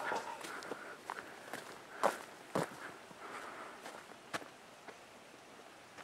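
Faint footsteps on a dirt forest trail, a step roughly every half second, thinning out and stopping about four and a half seconds in.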